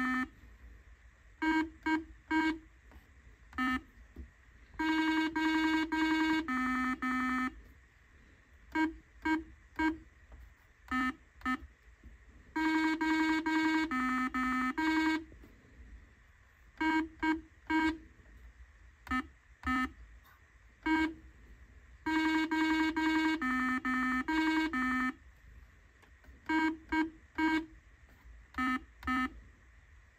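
Simon electronic memory game playing a round: short electronic beeps at a few different pitches, some in quick runs of several notes as the game plays its sequence, others single as the buttons are pressed, with brief pauses between.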